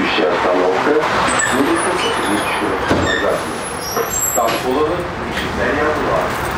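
Tram running along its track, a steady rumble inside the car, with indistinct voices of people talking throughout and a few brief high-pitched squeaks in the middle.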